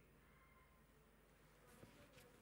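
Near silence: room tone with a faint hum, and one faint click near the end.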